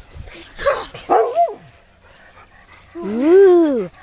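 Dog barking a few short times, then a long call that rises and falls in pitch near the end.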